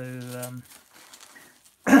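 A man's voice holding a drawn-out 'so…' that trails off, then faint crinkling of bubble wrap being handled, and a loud throat-clearing 'um' right at the end.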